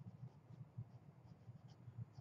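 Faint scratching of a wooden pencil writing on paper.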